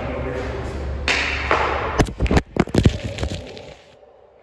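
A hockey puck smacks into the camera about halfway through with a sharp crack. A quick run of knocks and clatter follows as the camera is knocked down, then the sound drops away sharply near the end.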